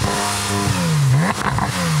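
Porsche 911 GT3 flat-six engine being revved. Its pitch holds briefly, then drops and climbs again about twice.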